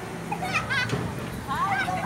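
Children's high-pitched voices calling out while playing on swings, in two short bursts, over a steady low hum.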